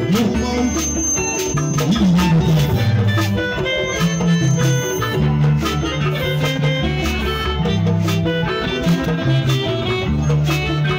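Live band music in the Igbo Anam traditional style: a deep, moving bass line and melodic instrument notes over steady percussion with a shaker-like rattle on the beat.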